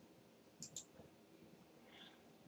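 Near silence with two faint, quick computer mouse clicks a little over half a second in, advancing the slide show to the next slide.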